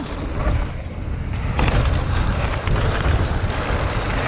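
Wind rushing over an action camera's microphone, with a downhill mountain bike's tyres rolling and rattling over a hard-packed dirt trail at speed. The rush grows a little louder about a second and a half in.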